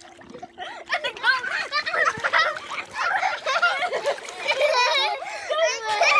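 Children's high voices talking and calling out while they play in a pool, with some water splashing.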